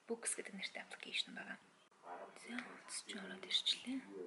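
A woman speaking in Mongolian: only speech in this stretch.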